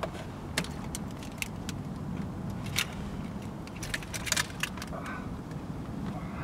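Keys jingling in short clusters of sharp metallic clicks, most around the middle and after four seconds, over a steady low rumble inside a car.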